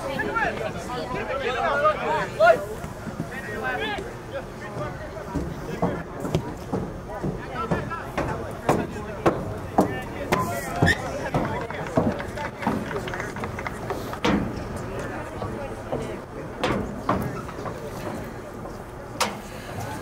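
Voices calling and shouting across an outdoor soccer field during play, mostly in the first few seconds, with scattered sharp knocks through the second half.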